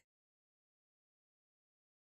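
Complete silence: the audio track is muted.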